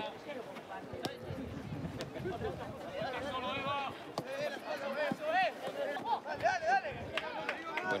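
Shouts and calls of players and coaches on a football pitch, fainter than a close voice, scattered through the play. A few sharp knocks, typical of the ball being kicked, come through about one and two seconds in.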